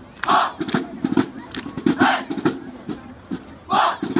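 A group of young women's voices shouting a chant in unison: pairs of short, loud shouts that repeat about every second and a half, over a steady run of sharp rhythmic hits.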